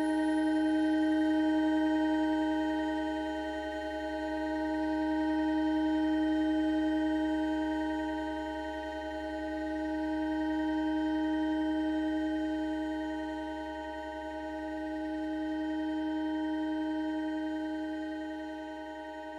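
Experimental electronic music: a sustained drone of several steady, unchanging tones stacked into a chord with a low hum beneath, swelling and fading slowly about every five seconds.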